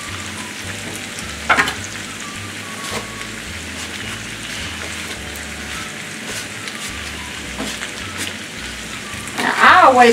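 Diced potatoes frying in oil in a cast iron skillet, a steady sizzle, as chopped onion is scraped from a plastic cutting board into the pan with a metal spatula. A sharp clack of the spatula comes about a second and a half in, with lighter knocks later.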